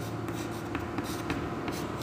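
Chalk writing on a chalkboard: a series of short scratches and taps as the letters are formed.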